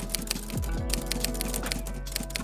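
Typing sound effect: a rapid run of keyboard-like key clicks over background music, with deep falling bass swoops in the music.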